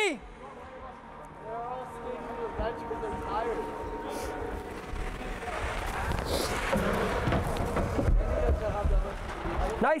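Ice hockey rink ambience: indistinct voices echoing in the arena over a steady rumble, with low thumps, the heaviest about eight seconds in as a player is checked.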